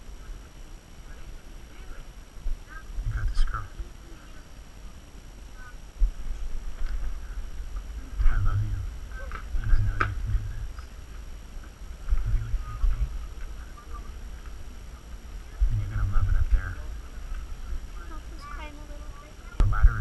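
Faint, indistinct voices of people standing around, with repeated bursts of low rumble on the microphone.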